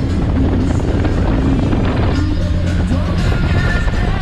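Background music laid over the steady noise of a motorboat running at speed: a low engine drone with rushing wind and water. Held musical notes come in more clearly about halfway through.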